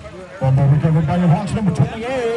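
A man's voice shouting loudly close to the microphone, starting about half a second in and stopping near the end, over quieter background voices.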